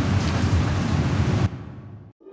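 A steady rushing noise with a low rumble that fades away about a second and a half in.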